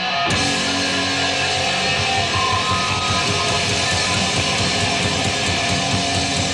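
Live hard rock band playing an instrumental passage: electric guitars, bass and a drum kit, loud and without a break, with no vocals.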